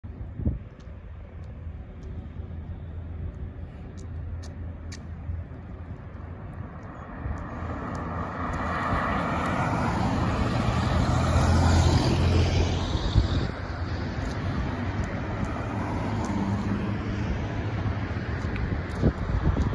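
A bus running with a low engine rumble that grows louder from a little before halfway, as it draws near. It is loudest about two-thirds in, then eases back to a steady run.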